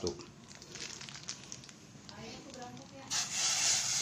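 Plastic bag of fish-bait dough crinkling faintly as it is handled. About three seconds in, a loud steady hiss sets in from the pot of nearly boiling water on the gas burner.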